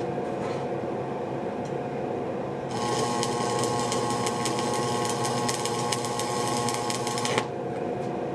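Electric welding arc crackling and buzzing steadily. It strikes about a third of the way in and cuts off suddenly shortly before the end, over a steady hum that runs throughout.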